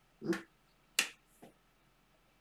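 Tarot cards being handled by hand. There is a soft rustle near the start, then a sharp snap of a card about a second in, and a fainter tap just after.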